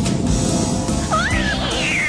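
A cat yowling over background music, starting about a second in, its cry rising and then falling in pitch.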